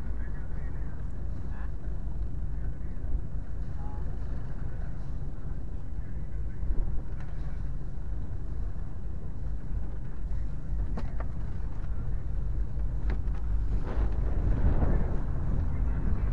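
Fishing boat's engine running steadily with a low rumble, with a few light knocks on the boat and a louder rush of noise near the end.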